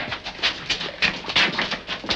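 A dog panting, a quick run of short breaths.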